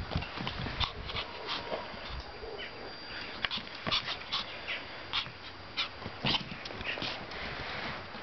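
Pomeranian puppy giving many short, high-pitched whines and yelps while playing, mixed with clicks and knocks from her scrabbling and the stick.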